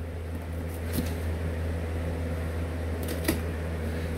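Steady low hum with a few faint knocks and light rubbing of cardboard as a boxed item is slid out of a cardboard shipping carton.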